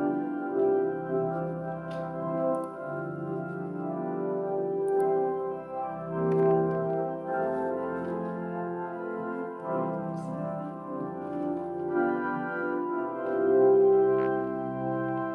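Organ prelude: slow, sustained chords played on an organ, the notes held and changing every second or two.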